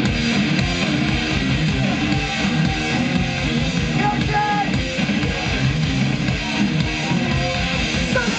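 Thrash metal band playing live at full volume: distorted electric guitars, bass and fast, driving drums.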